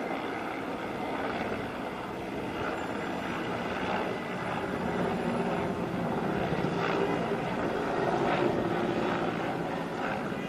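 Mil Mi-17-type military transport helicopter flying past: a steady rotor and engine sound that grows louder as it comes nearer, loudest near the end.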